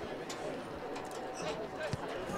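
Distant voices of players and spectators calling out across an outdoor soccer field, with a single thump near the end as the ball is struck on a corner kick.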